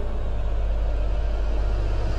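Steady low rumbling background drone from the cartoon's soundtrack, unchanging throughout.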